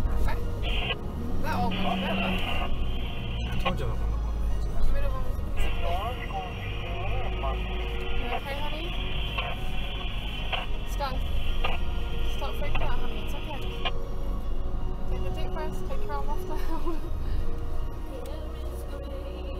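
Cabin sound of a Toyota Prado 150's 3.0 L turbo-diesel driving in low range through soft sand, a constant low engine rumble under music playing in the cabin. A steady high-pitched tone comes in briefly twice near the start, then holds from about five to fourteen seconds.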